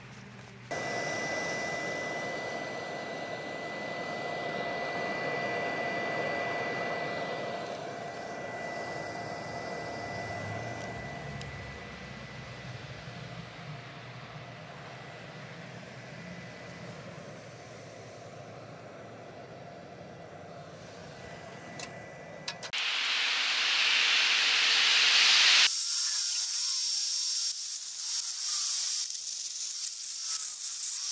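Stick (arc) welding on steel trailer axle tubes with 7024 electrodes: a loud crackling arc hiss in the last few seconds, preceded by a softer hiss. For most of the clip before that, a steady hum with a thin high whine.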